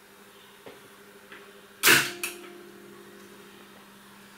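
TEAC tape recorder transport key being pressed: a couple of faint clicks, then a loud mechanical clunk about two seconds in with a smaller one just after. A faint steady hum runs underneath.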